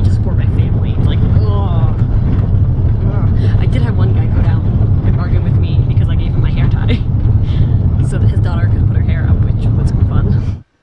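Steady low rumble of a moving van, engine and road noise heard inside the cabin, with a woman talking over it.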